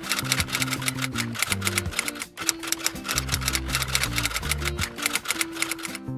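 Rapid typewriter-style key clicks, a typing sound effect, over background music with low notes moving in steps. The clicks break off briefly a little over two seconds in.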